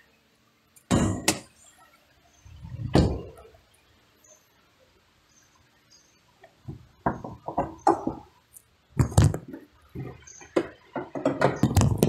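Changan UNI-T's driver's door and bonnet being worked: two loud thunks in the first three seconds as the bonnet release is pulled and the door shut, then from about seven seconds a run of clicks and knocks as the bonnet's safety catch is freed and the bonnet lifted, the loudest about nine seconds in.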